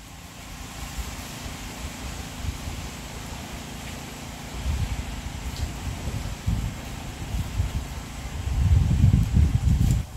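Wind buffeting the microphone: an irregular low rumble that swells in gusts and is strongest in the last second and a half.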